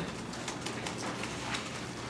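Quiet room tone in a pause: a steady low hum with a few faint clicks.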